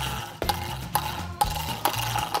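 Plastic mini hockey stick tapping and stickhandling a small puck on a wooden floor, a sharp clack about every half second. Background music with a low bass line runs underneath.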